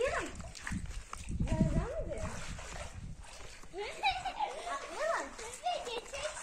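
Children's high-pitched voices calling out and shouting without clear words, with a low rumbling noise in the first two seconds.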